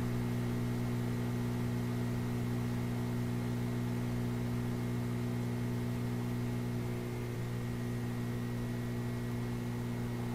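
A steady low hum with a faint hiss under it, unchanging throughout.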